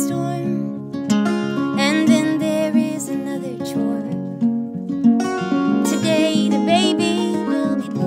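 A woman singing a slow folk ballad over acoustic guitar, her held notes wavering with vibrato about two seconds in and again about six seconds in, the guitar notes ringing on between the sung lines.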